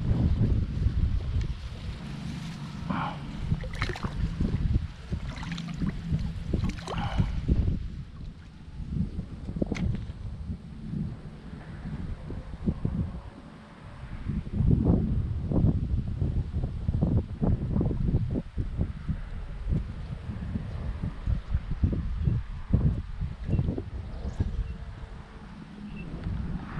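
Wind buffeting the microphone in uneven gusts, with a few short clicks and rustles in the first several seconds.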